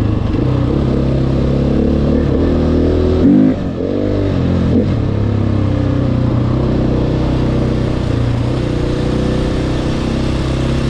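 KTM 450 EXC's single-cylinder four-stroke engine running steadily under way on the road, with a brief change in revs about three seconds in where the pitch drops and climbs back up twice before settling.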